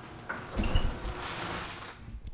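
A garage door being raised, rumbling and rattling as it rolls open, starting about a quarter-second in.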